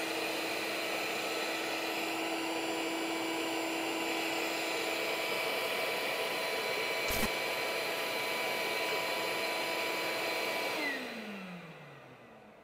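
Shop vacuum motor running steadily, switched on remotely through an iVAC switch by the CNC controller's flood output. A single click comes about seven seconds in. A few seconds later the motor cuts out and winds down with a falling whine near the end, the iVAC's delayed stop after the stop command.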